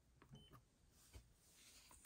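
Near silence with a few faint clicks from pressing the buttons of a handheld UltraTEV Plus2 tester, and one very short faint beep about half a second in.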